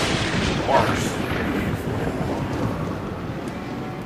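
Explosion sound effect from an animated logo intro: a dense low rumble that slowly fades over the few seconds, with a second hit just under a second in.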